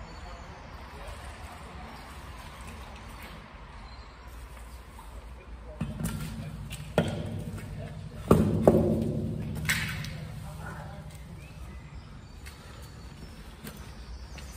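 A magnet and its catch, a rusty pickaxe, hauled out of a canal, knocking and clanking several times against the concrete edge about seven to ten seconds in. A steady low rumble lies under it.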